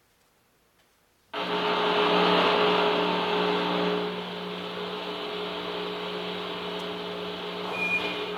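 Near silence, then about a second in a sudden loud entry of a sustained orchestral chord blended with a hissing, roaring electronic layer, easing back a little after about four seconds.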